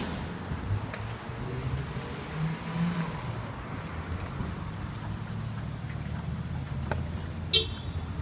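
Road traffic: a steady low rumble of vehicle engines, with a short sharp high sound near the end.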